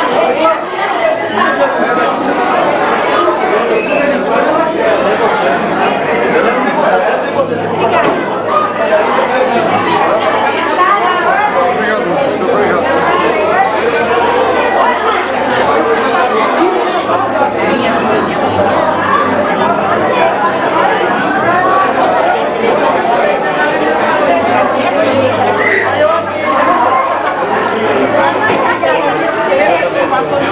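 Steady babble of many people talking at once in a large room, overlapping conversations with no single voice standing out.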